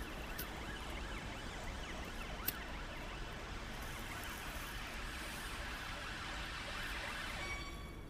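A tobacco pipe being relit with a lighter and puffed on: a faint steady hiss with a sharp click about two and a half seconds in, easing off just before the end.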